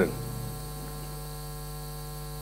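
Steady electrical mains hum, a low buzz with many evenly spaced overtones, holding at one level once the last word dies away.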